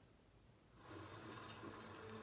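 Near silence, then a faint steady sound from the television from under a second in, as the streamed show's audio starts playing.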